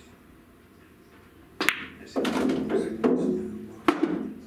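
A pool cue strikes the cue ball with a sharp clack about one and a half seconds in. A rolling rumble and a couple of knocks follow as balls run into the cushions and an object ball drops into a pocket.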